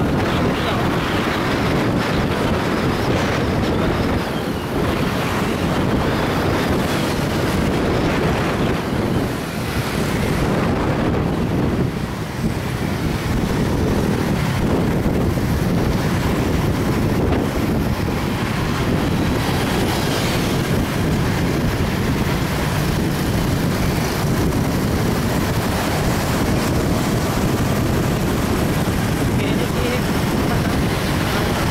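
Steady wind noise on the microphone of a moving vehicle, mixed with engine and tyre noise of surrounding road traffic; it dips briefly twice, around nine and twelve seconds in.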